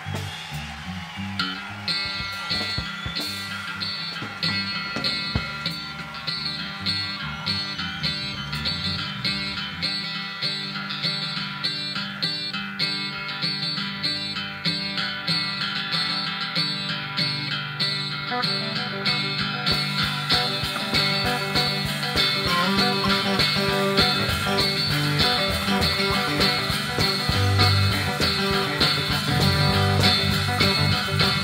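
Live country-rock band playing an instrumental passage with electric guitars, bass and drums at a steady beat. The guitars come in about a second and a half in, and the band grows a little louder in the second half.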